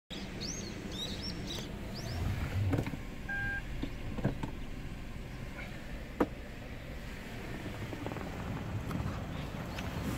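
Low steady rumble in a car's cabin with a few sharp clicks, a short electronic beep about three and a half seconds in, and birds chirping in the first couple of seconds.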